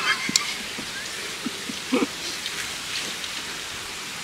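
Steady outdoor hiss with a few light clicks of chopsticks against a plate, the sharpest just after the start, and a brief murmured voice about halfway through.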